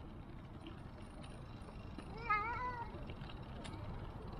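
A single short, high-pitched wavering cry lasting about half a second, just past the middle, over a steady low rumble of bicycle tyres rolling on paving stones.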